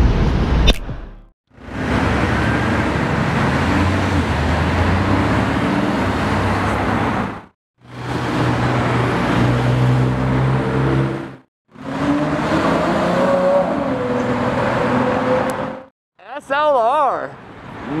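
Sports cars driving past on a city street in three short clips, each with a steady low engine note over tyre and traffic noise, and each cutting off abruptly. One of the cars is a McLaren convertible.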